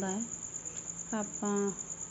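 Crickets chirping in a steady, high, rapidly pulsing trill.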